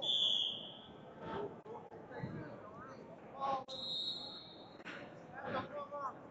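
Wrestling referee's whistle blown once for about a second to restart the bout, then a second, longer whistle blast about three and a half seconds in, among shouting voices in an echoing gym.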